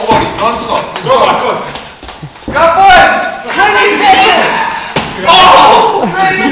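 Several people shouting and calling out encouragement, with a few sharp thuds of boxing gloves landing during a sparring round.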